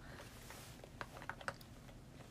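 A quick run of five or six faint, light tapping clicks about a second in, like typing.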